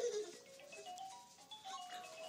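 A simple electronic tune from a baby activity jumper's music toy, played as a string of held notes stepping up and down. A short baby vocal sound comes right at the start.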